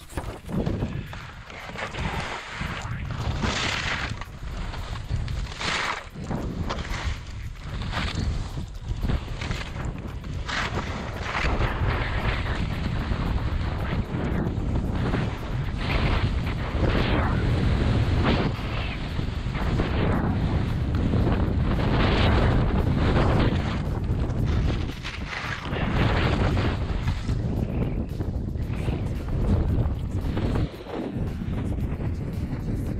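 Wind rushing over an action-camera microphone while skiing fast down a steep chute, with skis scraping over crusted snow through the turns. The noise swells and fades every second or two.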